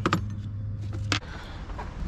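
Metal hand tools clinking and clicking as pliers are picked out of a tool tray, with a sharp click about a second in. A steady low hum stops just after that click.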